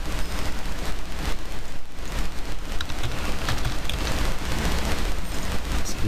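Loud steady hiss and crackle with a low hum underneath: the noise floor of a poor-quality microphone, heard with no voice over it.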